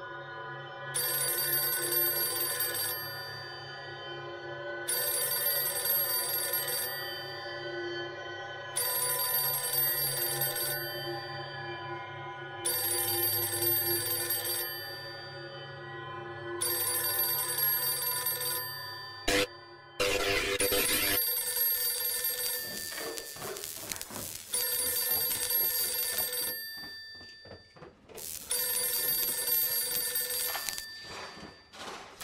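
An old wall-mounted telephone's bell ringing in rings of about two seconds, one every four seconds, over a steady ambient music drone. A sharp click and a short burst of noise come about twenty seconds in, after which the ringing goes on.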